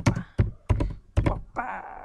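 Typing on a computer keyboard: a quick run of about eight sharp key strikes, loud and close to the microphone.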